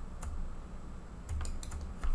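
A few computer keyboard and mouse clicks: one about a quarter second in and a quick cluster of clicks near the end, as a shift key is held and sides are clicked.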